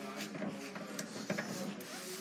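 A wooden cabinet drawer pulled open by its iron pull handle, sliding out with a couple of light knocks about halfway through.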